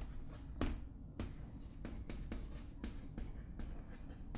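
Chalk writing on a chalkboard: a run of irregular short taps and scratches as letters are written.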